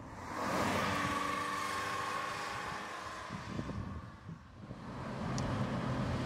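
MGF roadster driving with the roof down: its four-cylinder engine holding a steady note under wind and road noise. The sound swells in the first second, fades to a low point about four and a half seconds in, then builds again.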